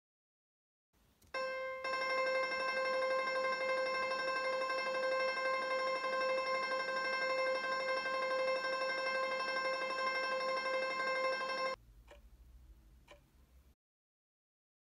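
A single steady held note, unchanging in pitch and loudness, with many bright overtones. It begins about a second in, sounds for about ten seconds and cuts off suddenly, leaving faint low noise with two soft clicks.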